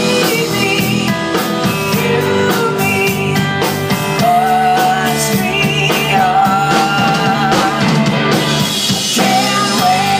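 Live rock song played loud on electric guitar and drums, with a singing voice carrying wavering held notes in the middle of the passage.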